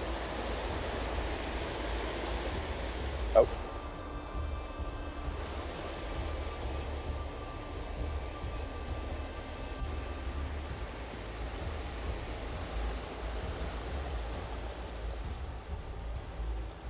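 Fast mountain stream rushing over rocks, swollen with snowmelt, a steady wash of water noise. One short squeak about three seconds in.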